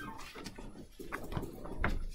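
Quiet classroom room noise, with a few faint clicks and rustles about halfway through and again near the end.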